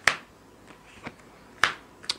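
A tarot card being drawn and set down on the spread makes two sharp snaps of card stock, one at the start and one about a second and a half in, with faint rustles between.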